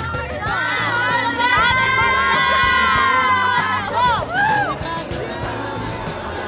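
A group of people cheering together for a toast, one long loud held shout of many voices, followed by a few shorter rising-and-falling whoops.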